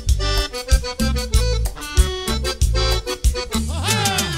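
Accordion-led tropical band music played live over a steady bass and percussion beat, with a falling pitch slide near the end.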